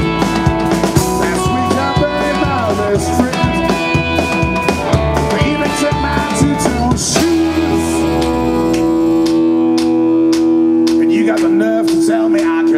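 Live blues band: an electric guitar playing lead with bent notes over drums and bass. About seven seconds in the band settles on one long held closing chord, with drum and cymbal hits over it, as the song winds down.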